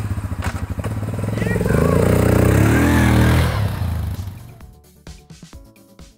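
Quad bike (ATV) engine running and revving, getting louder over the first three seconds or so and then fading away.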